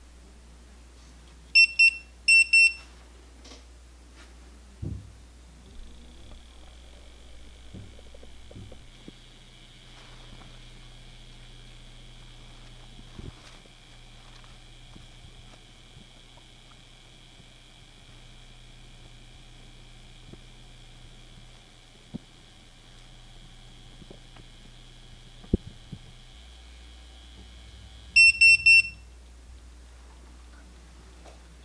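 Electronic beeps from PEM hydrogen water bottles: two short loud beeps as the electrolysis cycle is started. Then a faint steady high whine and low hum while the cells run, and four quick beeps near the end as the cycle finishes.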